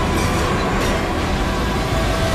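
Loud, steady roar of a giant wave crashing over a ship: a disaster-movie sound effect, with held music tones underneath.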